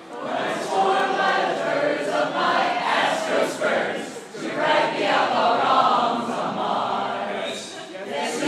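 A group of voices singing a western-style theme song a cappella, with no instruments and no clear words. There are short breaks between phrases about four seconds in and near the end.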